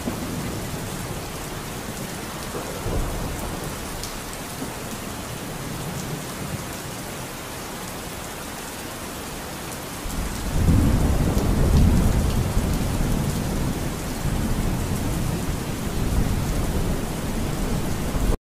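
Steady rain with thunder rumbling; the thunder swells about ten seconds in and keeps rolling.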